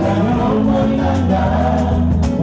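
Live Congolese gospel singing: several male voices in harmony through microphones, over steady low bass notes from the accompanying band.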